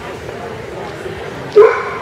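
A dog gives one short, loud bark about a second and a half in.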